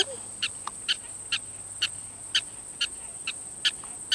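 A black-tailed prairie dog squeaking in a steady series of short, sharp calls, about two a second, evenly spaced: the repeated alarm call prairie dogs give when they sense a threat.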